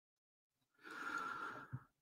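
A man's audible breath through the mouth, lasting about a second from near the middle, followed by a small mouth click just before he starts to speak.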